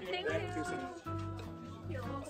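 Background music with a few held notes. It opens with a short pitch-bending cry, which may be a cat-like meow sound effect or a vocal.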